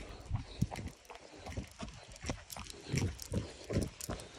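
Running footsteps on a dirt trail, a steady rhythm of about three footfalls a second.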